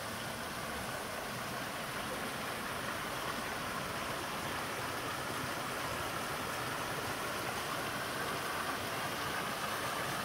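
Shallow spring-fed stream running over stones, with a small cascade spilling from a stone wall into a pool: a steady rush of water that grows slightly louder.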